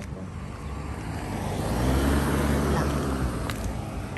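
A car passing by on the street, its engine and tyre noise swelling to a peak about two seconds in and then fading away.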